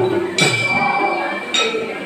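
Dance music: a metal hand cymbal struck sharply once, its bright ring hanging on, over a singing voice.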